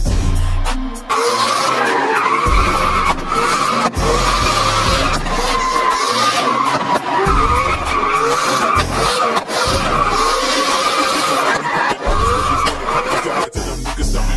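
Drift car tyres squealing in a long continuous screech as the car slides sideways, its engine revving up and down as the driver works the throttle. It starts about a second in and cuts off just before the end, over background music with a steady bass beat.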